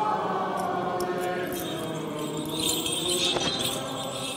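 Congregation singing a Byzantine liturgical chant together in a church, with small metal bells jingling over the singing.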